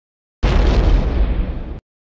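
A loud burst of rumbling noise, heaviest in the bass, starting abruptly about half a second in and cutting off sharply just before the end, its upper hiss fading as it goes.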